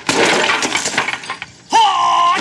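A window's glass and wooden frame smashing under a punch, a loud crash with debris rattling down over about a second and a half. Near the end, a short loud shout.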